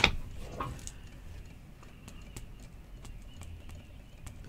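One sharp click at the start, then faint, irregular light clicks and taps from someone writing down a note at a desk.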